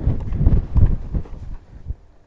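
Hoofbeats of a horse loping on a sandy arena surface, slowing and fading out as the horse comes to a stop about a second and a half in.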